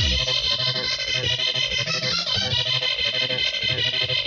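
Hardcore electronic dance music from a DJ set: a fast, steady beat under bright synth chords, running without a break.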